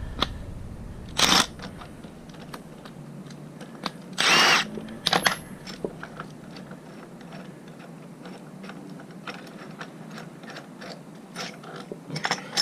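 Two short bursts of a Milwaukee FUEL cordless drill spinning, a brief one about a second in and a longer, louder one around four seconds in, with the motor pitch dipping and rising. Faint metallic clicks of gearbox parts being handled run between them.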